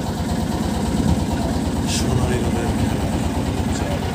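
Boat engine running steadily, a fast, even low throb. A brief hiss cuts in about two seconds in.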